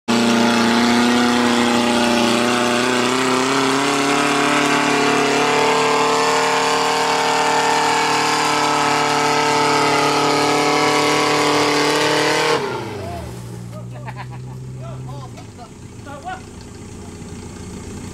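Off-road 4x4's engine held at high revs as it climbs through deep mud, its pitch stepping up about five seconds in. About twelve seconds in the revs fall away sharply, leaving the engine lower and quieter, with people's voices.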